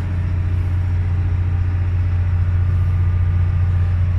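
Running engine machinery giving a loud, steady low hum with no change in pitch; it is the noise that makes the room loud.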